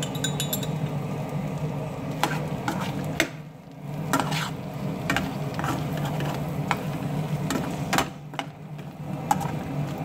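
A metal spoon scraping and clicking against an aluminium frying pan as shrimps are stirred, over a light sizzle and a steady low hum, pausing briefly twice.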